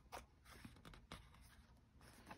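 Faint rustling and light ticks of fingers handling the paper pages of a handmade journal, almost at the level of room tone.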